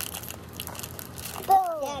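Plastic cookie wrapper crinkling as a child pulls and twists at it, struggling to tear it open. A child's voice starts near the end.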